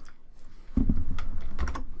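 Computer keyboard keys being pressed, a few clicks starting just under a second in, over a low rumble.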